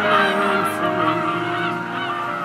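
A flock of geese honking, many short calls overlapping, over music with long held notes.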